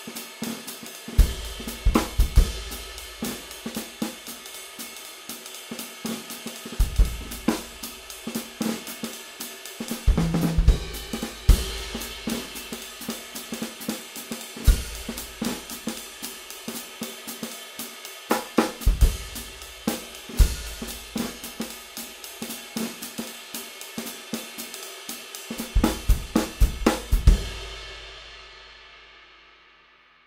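Drum kit played with a Zildjian 22" K Constantinople Bounce Ride cymbal keeping steady time, with snare and hi-hat and scattered bass-drum hits. At the end the ride is left ringing and dies away over about two seconds, its sustain full of complex overtones with no definite pitch.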